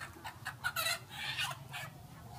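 Chickens clucking in a quick run of short calls, loudest about a second in.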